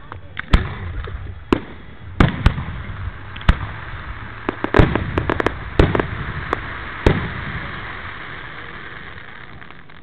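Aerial fireworks display: a series of sharp shell bursts, about eight bangs over the first seven seconds, with crackling between them in the middle. After the last bang a lingering hiss fades away.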